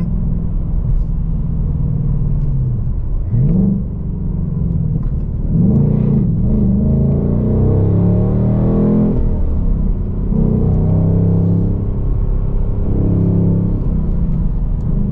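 The 5.0-litre Coyote naturally aspirated V8 of a 2024 Ford Mustang Dark Horse with six-speed manual, heard from inside the cabin while driving. The engine pitch rises and falls with the revs: a quick climb a little over three seconds in, a longer rise from about five to nine seconds, then a drop and steadier running.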